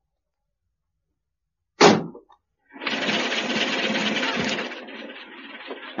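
Radio-drama sound effect of a lorry. A cab door slams shut about two seconds in. Then the engine starts and runs steadily, loud at first and settling lower after a couple of seconds.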